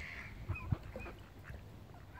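Mallard ducks calling close by: a burst of quacking at the start, then a few short, high calls. A couple of dull low thumps come through underneath.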